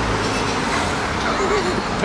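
Steady rumble of street traffic, with faint voices in the background.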